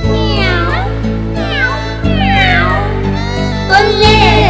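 Cartoon kitten voices meowing over a children's music backing track: several separate gliding, mostly falling meows on top of steady sustained chords.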